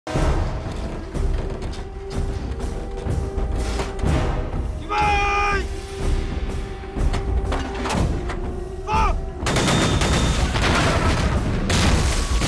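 Film battle sound effects: gunshots and artillery booms over a music score with a steady held tone, and two short shouts, about five seconds in and near nine seconds. From about nine and a half seconds the blasts and gunfire turn dense and continuous.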